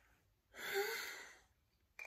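A woman's breathy sigh, about a second long, starting half a second in.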